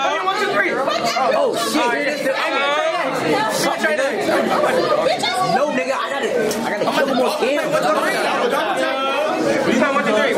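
Chatter of many teenage voices talking over each other in a large room, with a few sharp hand claps.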